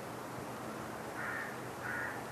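Two short bird calls, the first a little over a second in and the second near the end, over faint steady recording hiss.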